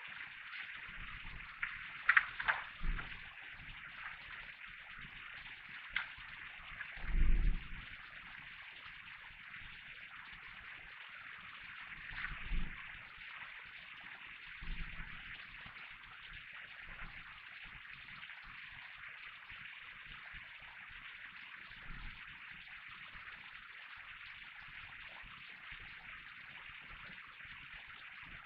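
Faint steady hiss with a few soft clicks and short low thumps, the loudest about seven seconds in, as candles are handled and set down on a table while being lit.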